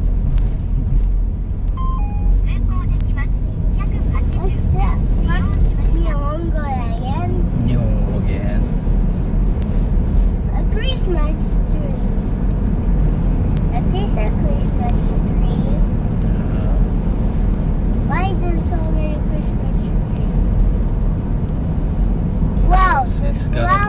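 Steady low rumble of a car driving, tyre and engine noise heard inside the cabin, with a short two-note beep about two seconds in.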